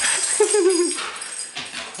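Husky giving a short, wavering whine about half a second in, amid rustling as the dogs move.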